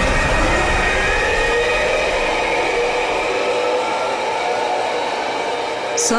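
A TV-drama scene-transition sound effect: a steady whooshing rush of noise with faint tones slowly gliding in pitch, its deep rumble dying away about halfway through.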